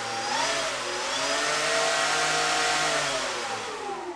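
Twin Dualsky brushless electric motors and propellers of an RC Twin Otter model running forward under throttle. The whine climbs in pitch at the start, holds steady for a couple of seconds, then falls away from about three seconds in as the throttle is eased back.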